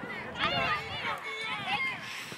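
Several children's voices shouting and calling over one another, high-pitched and loudest from about half a second in.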